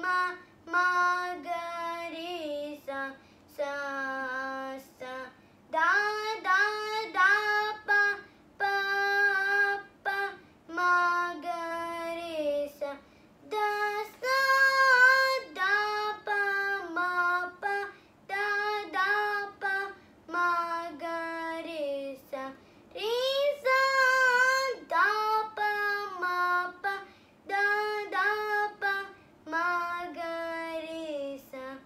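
A young girl singing solo and unaccompanied, in short held phrases with brief pauses between them.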